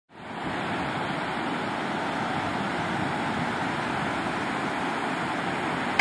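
Steady rush of ocean surf breaking on a beach, fading in at the start.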